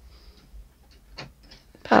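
A few faint light clicks of small plastic toy pieces being handled, as a chair is lifted out of a toy doughnut wagon.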